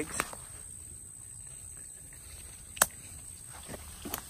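Quiet outdoor background with a steady high-pitched hum, broken by two sharp clicks: a small one just after the start and a louder one a little under three seconds in.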